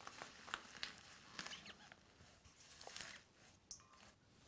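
Faint rustling and light crackling of fresh leaves being pressed by hand into a glass beaker, with a few small ticks and taps scattered through.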